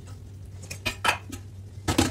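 Metal kettle handled with a few clinks about a second in, then set down with a louder clank near the end.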